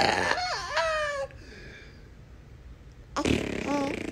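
A baby vocalizing: a high-pitched coo with rising and falling pitch in the first second or so, then a quieter stretch and a short vocal sound near the end.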